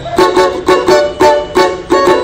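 Marquês Brazilian banjo (banjo-cavaco) strummed in a repicada pagode rhythm, about four strokes a second. It moves between a minor chord and a D chord, in groups of three strums then two.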